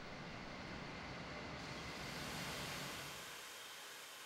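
Faint, steady rushing noise of refuse burning in a waste incinerator furnace, with a low rumble that fades out near the end, leaving a thin hiss.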